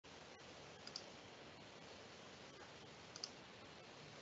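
Near silence with a faint steady hiss, broken twice by a quick pair of small clicks, about a second in and again past three seconds.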